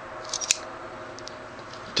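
Small metallic clicks from the action of a Colt Frontier Scout .22 single-action revolver handled at half cock with its cylinder free to turn: a few soft clicks and one sharp click about half a second in, then faint ticks.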